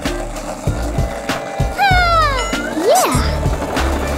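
Cartoon background music with a steady bass pattern, overlaid with sound effects: a falling whistle-like glide about two seconds in, and a quick rising-then-falling whoop about three seconds in.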